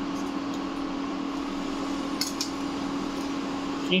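Cooktop's cooling fan humming steadily, with two light clicks of a steel spoon against the pan a little after two seconds in.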